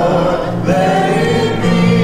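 A small choir of women singing a gospel hymn in long held notes, breaking briefly about half a second in before the next phrase begins.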